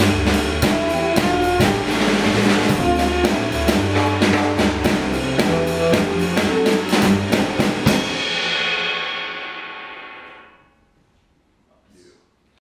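Jazz combo playing: drum kit on a Gretsch set, electric guitar and a low bass line. About eight seconds in, the band stops on a final chord, which rings with the cymbals and dies away over about two seconds into near silence.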